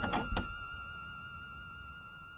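Quiet, fading tail of a song's instrumental: a few held high tones and some faint clicks near the start, dying away.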